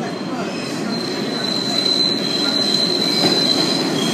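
New York City subway train pulling into a station, its rumble growing louder as it approaches. A steady high-pitched wheel squeal rises over the rumble about a second in and holds until near the end.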